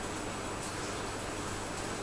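Steady low hiss of room noise, with no distinct sounds standing out.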